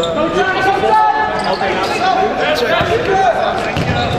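Futsal being played in a sports hall: shoes squeaking on the court floor, sharp knocks of the ball being kicked, and players calling out, all echoing in the hall.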